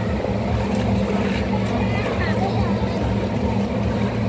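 Steady low hum and rush of a water park lazy river's moving water, level throughout, with faint chatter over it.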